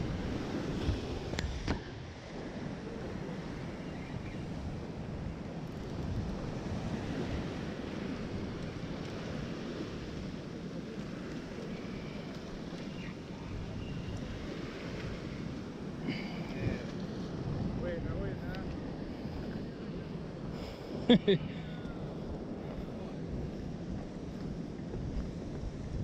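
Sea surf washing over rocks, with wind buffeting the microphone: a steady rushing noise. A short burst of voice, the loudest moment, comes about five seconds before the end.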